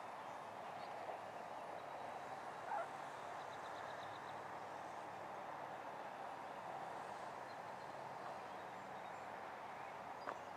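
Faint, steady outdoor background noise, with a short chirp-like sound about three seconds in.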